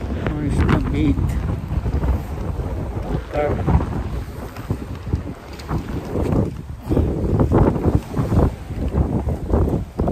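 Wind buffeting the microphone, an uneven low rumble that gusts up and down the whole time.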